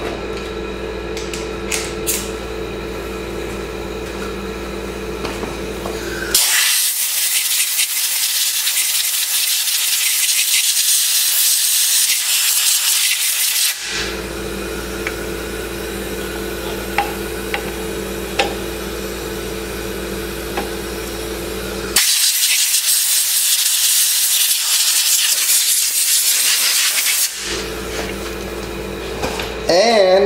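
Compressed-air blow gun hissing in two long blasts, the first about seven seconds and the second about five, blowing dust and cobwebs out of an ATV engine's stator.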